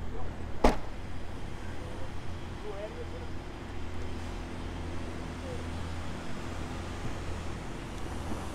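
A Ford Focus hatchback's tailgate slammed shut with a single sharp thud a little over half a second in, followed by a steady low background rumble.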